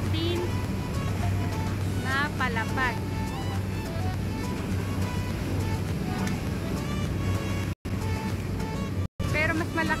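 A boat engine drones steadily and low under people's voices. The sound cuts out briefly twice near the end.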